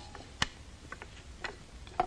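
Spoons knocking against a shared serving bowl as a family eats from it together: several sharp clicks, the loudest about half a second in, some coming in quick pairs.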